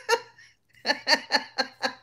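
A woman laughing: a short laugh, a pause of about half a second, then a quick run of laugh bursts, about five a second.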